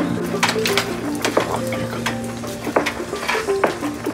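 Background music with steady held low notes, over a run of light clicks and clatters from a plastic-and-metal clothes drying rack and its hanging plastic peg clips being handled.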